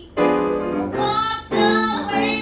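Women's voices singing a song-cycle number with piano accompaniment. A sung phrase comes in just after the start, and a new phrase begins about one and a half seconds in.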